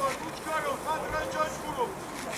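Distant shouting voices calling out across a football pitch, in rising and falling calls over wind noise on the microphone.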